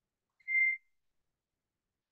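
A single short high-pitched beep: one steady tone at one pitch, lasting about a third of a second.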